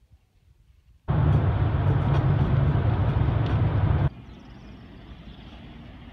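Road and engine noise heard from inside a moving Toyota car: a loud, steady rush with a deep rumble. It starts suddenly about a second in, after near silence, and cuts off about four seconds in to a much quieter, steady outdoor background.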